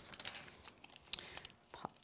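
Scattered light clicks and paper rustling as die-cutting plates are separated and a freshly die-cut paper template is handled.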